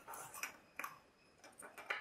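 A few faint, scattered light clicks and taps as the small plastic base of a two-pin fluorescent lamp is handled and set against a wooden tabletop.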